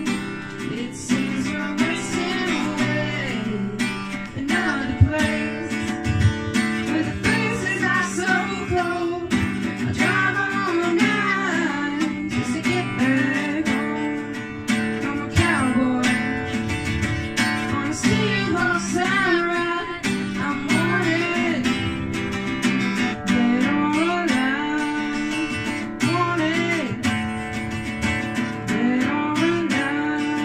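Acoustic guitar strummed in steady chords while a woman sings along.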